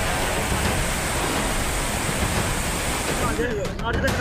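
Fast-flowing floodwater rushing past in a swollen river, a steady noise that stops short shortly before the end, where voices come in.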